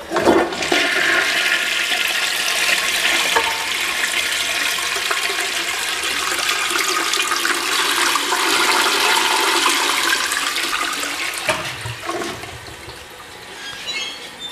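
Toilet flushing: a sudden rush of water begins right at the start and runs for about twelve seconds, then dies away.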